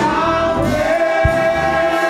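Live gospel song: a man sings lead into a microphone, holding one long note over choir voices and instrumental backing with a low, regular beat.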